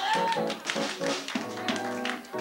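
Live band playing a samba-style number: electric guitar, bass, drums and keyboard, with sharp percussive taps running through it.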